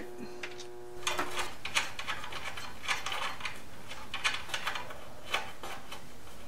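Irregular light clicks and clatters of metal parts being handled and fitted by hand. A steady hum is there at first and stops about a second and a half in.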